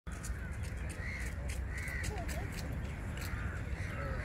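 Crows cawing a few times over a steady low rumble.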